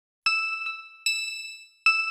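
Bell-like chime struck four times in an uneven pattern, each stroke ringing out and fading, in the instrumental opening of a Malayalam devotional song.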